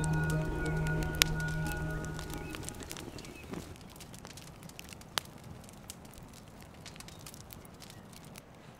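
Background music fading out over the first couple of seconds, giving way to a wood fire of split logs crackling in a steel fire bowl, with sharp pops about a second in and about five seconds in.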